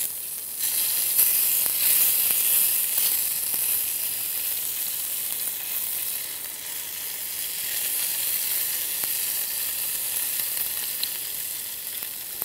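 Oil-based marinade and drippings sizzling steadily on hot charcoal beneath a rotisserie chicken as it is basted with a rosemary sprig, a little louder from about a second in.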